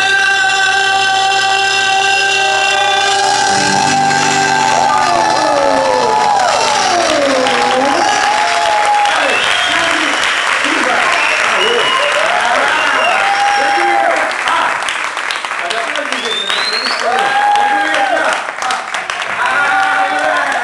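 Music ends on a long held chord. About five seconds in, an audience breaks into applause, cheering and whooping, with a short rising whistle near the end.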